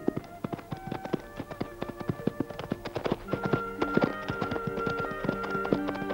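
Horse hooves clip-clopping in quick, irregular beats under film score music with long held notes, the music growing fuller about halfway through.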